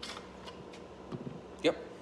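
Light handling of tools on a workbench: one short click at the start, a few faint knocks around the middle, over a steady low hum.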